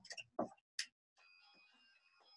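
Toy house's electronic doorbell, faint: a few soft clicks, then from about a second in a chime of several steady tones sounding together.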